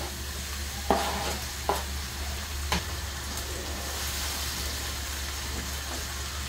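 Diced tomato hitting hot olive oil and sautéed onion in a frying pan, sizzling steadily while a wooden spoon stirs it. A few light knocks come about one, two and three seconds in.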